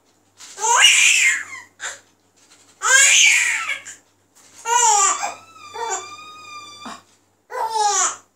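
An infant laughing and babbling in a series of bursts, each about a second long, with short pauses between them.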